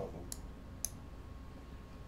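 Two faint computer mouse clicks, about half a second apart, moving a piece on an on-screen chessboard.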